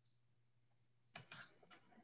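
Near silence: room tone with a faint low hum, and a few faint clicks a little over a second in.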